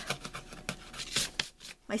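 A hand brushing dried salt crystals off a painted watercolour page: a series of short scratchy rubs and ticks of skin, grains and paper, dying away near the end.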